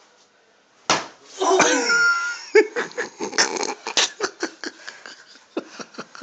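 A person is struck with a sharp smack about a second in and lets out a loud pained cry that falls in pitch, followed by a quick run of short sharp sounds.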